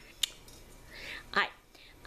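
A woman's soft, breathy voice saying "alright" after a short quiet stretch, with a single sharp click shortly before it.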